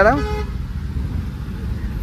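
Steady low rumble of car and surrounding street traffic, heard from inside the car's cabin.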